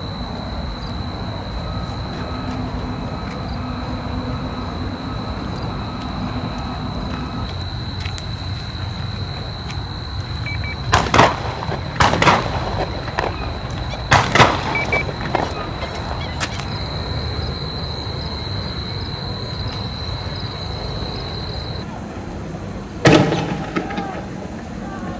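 Several sharp bangs over a steady low rumble: a cluster of about six in the space of five seconds around the middle, then one more with a brief ringing tail near the end.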